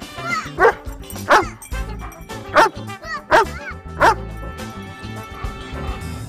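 Airedale terrier barking: five short barks within the first four seconds, over background music.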